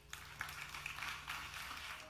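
Audience applauding, a spread of many hands clapping that starts just after the speaker's closing thanks.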